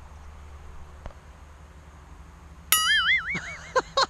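A comic sound effect starts suddenly about three-quarters of the way in: a loud, clean warbling tone that wobbles up and down in pitch, then breaks into a quick run of short falling notes, about five a second.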